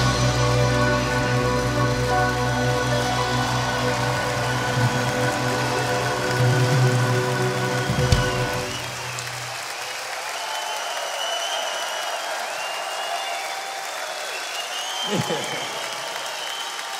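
A rock band and orchestra hold a final sustained chord, which ends with a drum and cymbal hit about eight seconds in. The audience then applauds and cheers, with whistles.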